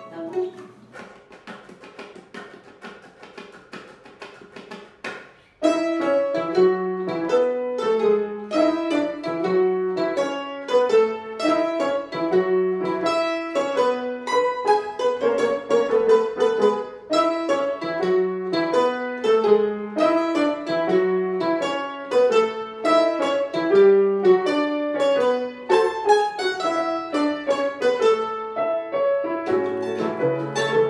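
Grand piano and Brazilian bandolim (mandolin) playing a choro-style tango brasileiro together. Soft, sparse notes for the first five seconds or so, then the full duo comes in loud with a lively, steady rhythm.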